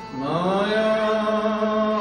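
A man's voice chanting a devotional mantra: it enters just after the start, slides upward and settles into one long held note, over a steady sustained instrumental drone.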